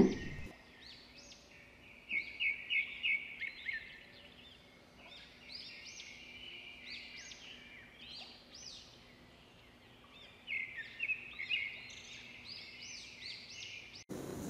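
Songbirds chirping: many short high chirps in quick runs, loudest about two seconds in and again near the end, with quieter chirping in between.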